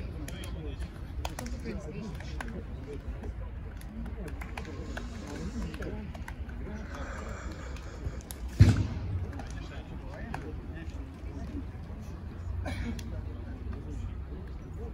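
Indistinct chatter of a group of men on an outdoor football pitch over a steady low rumble, with one sharp, loud thump a little past halfway.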